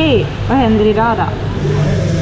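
A woman speaking briefly in Swedish over a steady low background hum.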